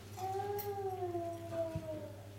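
One long howl-like cry, a single held note that slides slowly down in pitch for nearly two seconds, over a steady low hum.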